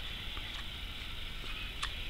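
A few faint, small clicks from handling the opened electric eraser's housing and shaft, the clearest near the end, over a steady low hiss.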